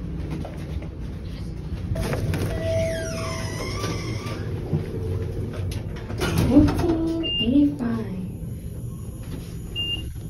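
Hotel elevator: a steady low hum, with short high beeps in the second half and brief low voices.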